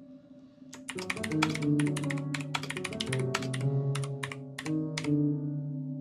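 Rapid typing on a backlit computer keyboard, the key clicks mixed with held musical notes that change along with the keystrokes, as each key plays a note in Ableton Live. The quick flurry of keystrokes starts about a second in and stops shortly after five seconds, leaving a chord ringing.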